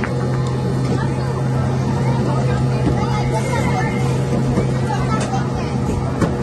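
Busy arcade ambience: a steady low hum under people's chatter, with a few short knocks.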